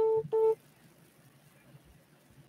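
Two short electronic phone-line beeps of one steady tone, each about a quarter second long, back to back at the start, as the call is switched from one caller to the next.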